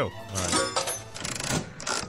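Slot-machine sound effect: a coin dropping in, then the reels spinning with rapid, dense clicking for over a second.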